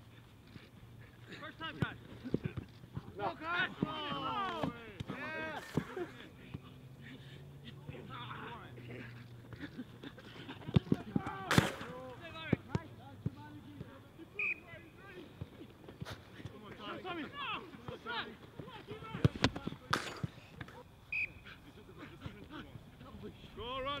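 Shouts of players and coaches across an open pitch, with sharp thuds of footballs being kicked, the loudest about eleven and a half seconds in and again around nineteen and twenty seconds.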